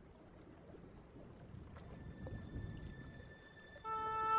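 Faint, uneven low rumble. Near the end, music with long held notes comes in.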